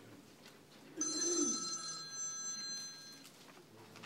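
A single bright ringing sound like a bell or phone ringer, several clear tones at once. It starts suddenly about a second in and fades out over about two seconds.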